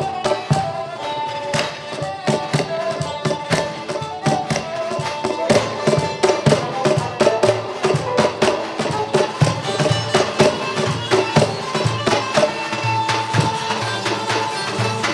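Instrumental passage of Kurdish folk music played live: santur, long-necked lute and cajon playing a fast passage of struck notes over a steady beat.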